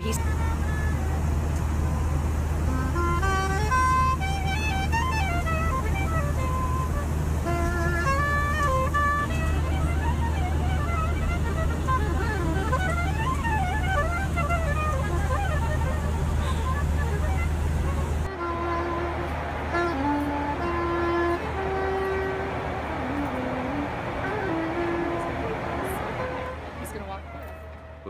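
Soprano saxophone playing a slow melody over the steady low drone of an airliner cabin. About two-thirds of the way through, the drone drops away and the melody moves to lower notes.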